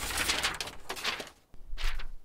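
Sheets of paper and crumpled paper balls swept off a wooden table, rustling and fluttering as they fly. There is one long burst, then a second, shorter rustle near the end.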